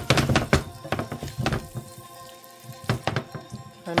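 Silicone-tipped kitchen tongs knocking against a skillet while tossing linguine in a thick cream sauce. There are a few quick knocks in the first half-second, then single knocks about a second and a half and three seconds in, over soft background music.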